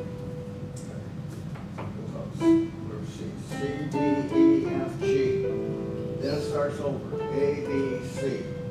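Notes played on electronic keyboards. Single notes begin about two seconds in and turn into short runs, over a low murmur.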